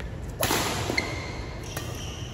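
Badminton overhead smash: a sharp, whip-like crack of racket strings striking the shuttlecock about half a second in, with a short echoing smear, then a second, shorter hit about a second in, ringing briefly in the large hall.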